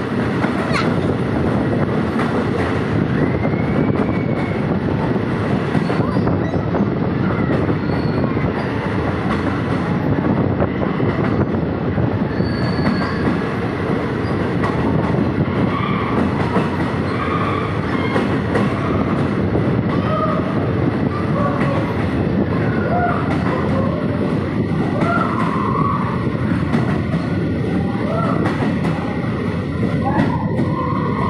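Passenger train running through a rail tunnel, heard from an open carriage doorway: a loud, steady rumble of wheels on rails, echoing off the tunnel walls.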